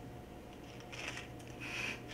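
Faint rustling and scraping as a small plastic jelly-bean container and its packaging are handled and worked open by hand, over a steady low room hum.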